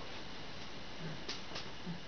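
Quiet room hiss with a few faint clicks and soft knocks from hands and arms moving against a table and clothing.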